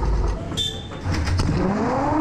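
Mail-sorting plant machinery running: a loud low rumble with clatter and clicks, and a motor whine rising in pitch near the end.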